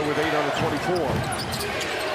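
A basketball being dribbled on a hardwood court over the steady din of an arena crowd.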